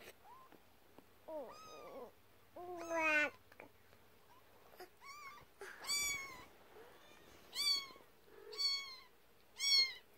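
A kitten meowing over and over in short, high-pitched cries, coming about once a second in the second half. About three seconds in there is one lower, longer cry.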